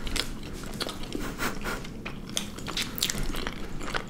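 Close-up chewing of half-and-half ice cream sandwiches by two people: soft wafer cookie and ice cream being chewed, with many short, sharp crackles.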